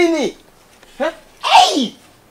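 A person sneezing once: a short voiced intake about a second in, then a loud, hissy 'choo' that falls in pitch.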